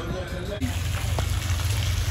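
A small fountain jet splashing steadily into its water basin, setting in suddenly about half a second in.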